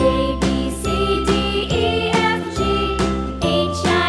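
A children's song playing as background music, with a bright pitched melody over a steady beat.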